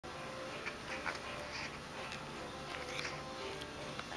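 A West Highland white terrier puppy making short little sounds several times as it bites and tugs at a sneaker, over steady background music.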